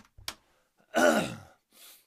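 A man's voiced sigh, falling in pitch, about a second in, after a couple of faint clicks.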